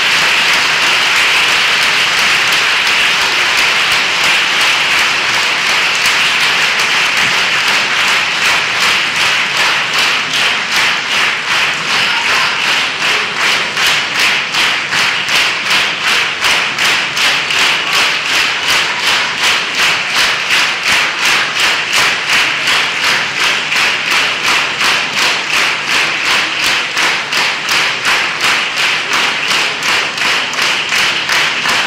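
Concert hall audience applauding, a dense wash of clapping that about eight seconds in falls into rhythmic unison clapping, roughly two and a half claps a second.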